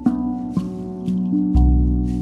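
Steel tongue drum (a RAV drum in B Celtic double ding) played slowly, single ringing notes struck about every half second, overlapping as they sustain. About a second and a half in, a deep shaman drum beat booms under them and slowly fades.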